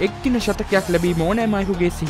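A voice with some long held notes, over background music.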